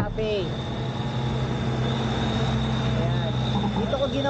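Steady ride noise from an electric motorcycle on the move: an even rush of wind and road with a thin, constant high whine and a low hum. Two brief snatches of voice come through, near the start and about three seconds in.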